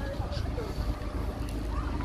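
Steady low rumble of wind on the microphone, with faint voices of people talking in the background.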